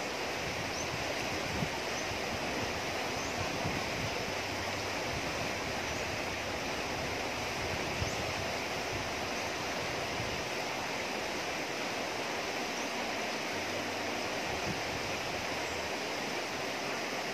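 Shallow river rushing over rocks and rapids, a steady rush of water with a low rumble that swells and fades. Two faint knocks, one early and one about halfway through.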